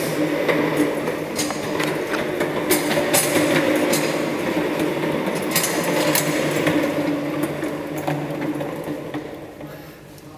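Office chair castor wheels rolling and rattling over a hard tiled floor with a steady clatter of small clicks, fading near the end as the chair slows to a stop.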